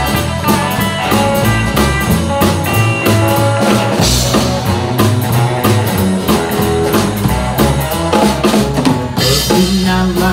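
Live band playing an instrumental break: electric guitars over a drum kit keeping a steady beat, with no singing.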